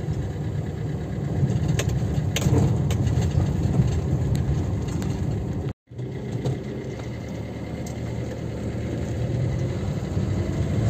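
A car running on the move, heard from inside the cabin: a steady low engine and road rumble with a few faint clicks. The sound cuts out for a split second a little past halfway.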